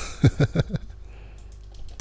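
A short laugh, then a few clicks of computer keyboard keys.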